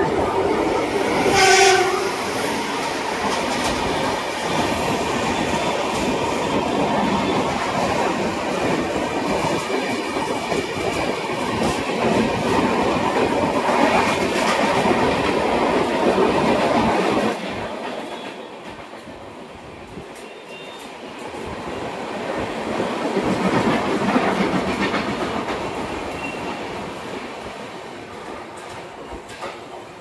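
Mumbai suburban local EMU train arriving at a platform: a short horn blast about a second and a half in, then the steady rumble and wheel clatter of the train running in, which drops off sharply just past halfway. A second, softer swell of rail noise rises and fades near the end.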